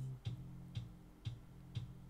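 Electronic track playback of a sustained synth bass under a sidechain compressor keyed from the kick drum, with short kick ticks about twice a second. About a quarter second in, the bass drops in level as more compressor mix is dialled in, so the bass ducks further under each kick.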